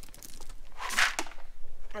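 Horse feed cubes poured out of a plastic scoop: a short rush of pellets about a second in, with a light knock just after.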